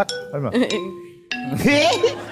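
Bright clinking, glassy chime, struck once and again about 0.7 s later, its ringing tones dying away over about a second. A voice breaks in suddenly about 1.3 s in.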